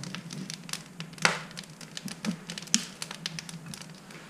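Wood fire crackling in an open wood stove, with split firewood knocking against the burning logs as pieces are set into the firebox; the loudest knock comes about a second in, another near three seconds.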